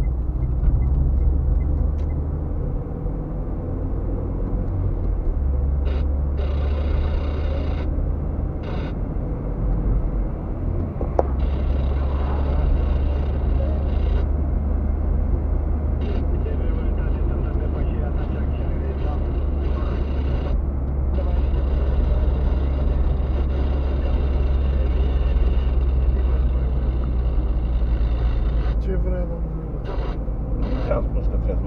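Car driving, heard from inside the cabin: a steady low rumble of engine and tyres on the road, with a higher hiss that comes and goes in stretches.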